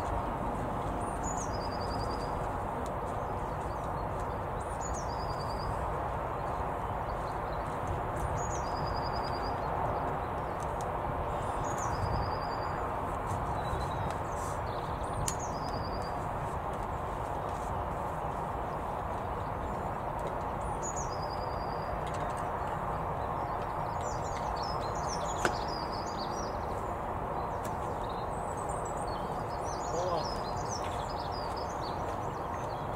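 A small songbird repeats one short phrase, a high falling note then a quick trill, about every three to four seconds, with busier, varied chirping near the end. Under it is a steady outdoor background rumble. One sharp click comes about 25 seconds in.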